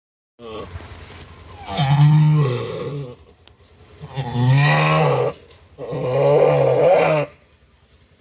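A ewe in labour calling with long, low bleats as she strains to deliver. A fainter call comes first, then three drawn-out calls about two, four and six seconds in.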